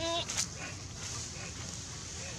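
A long-tailed macaque gives a short call right at the start, followed by a sharp click, over a steady background hum of the forest.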